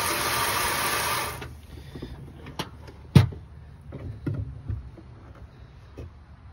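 Water spraying from a hose spray nozzle into a galvanized steel tub sink, a steady hiss that stops about a second and a half in. A few scattered knocks and clicks follow, the loudest about three seconds in.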